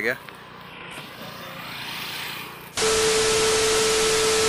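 A brief rising hiss, then a loud burst of TV static with a steady beep tone starting suddenly about three seconds in. It is a television test-card static sound effect used as an editing transition.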